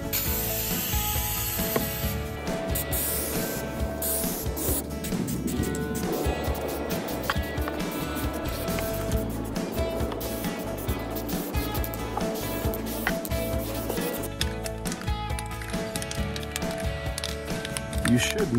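Aerosol can of clear Flex Seal spray-on rubber hissing on and off as it is sprayed. Steady background music plays underneath.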